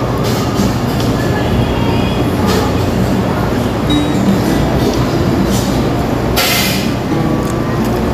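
Steady, loud restaurant din: a constant low rumble of background noise with faint chatter and the odd clink of dishes. A short burst of hiss comes about six and a half seconds in.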